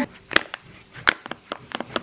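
Crinkly foil-lined paper pouch of ground cocoa being shaken and tapped over a paper bowl to pour out the powder: a string of short, sharp crinkles and clicks at an uneven pace.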